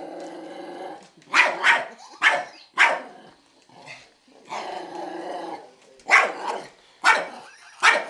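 Small long-haired dog growling and barking: a sustained growl, then several sharp barks, a second growl about halfway through, and more barks.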